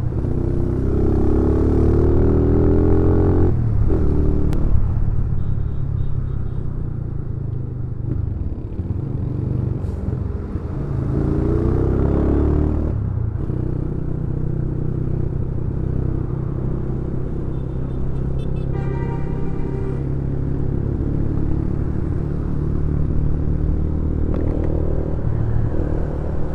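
Yamaha Scorpio's 225 cc single-cylinder four-stroke engine running while the bike rides through traffic, rising in pitch as it accelerates about a second in and again about eleven seconds in. A brief higher-pitched tone sounds a little past the middle.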